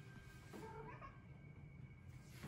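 A British shorthair cat giving a faint, short meow about half a second in, rising in pitch.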